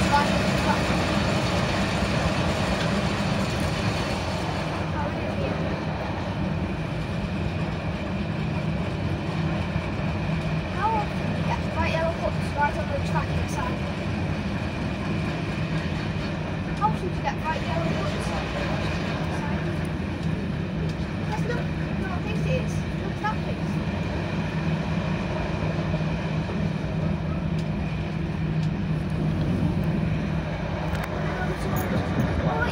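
Class 108 diesel multiple unit heard from its driving cab while under way: the steady drone of its underfloor diesel engines mixed with the running noise of the wheels on the rails.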